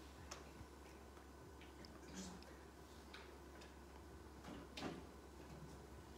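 Near silence: room tone with a low hum and a few faint, scattered clicks and rustles.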